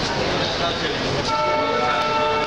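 A passenger train pulling out of a station, with a rumbling run of coaches. A train horn starts a little past halfway and holds a steady note. Voices from the platform are heard underneath.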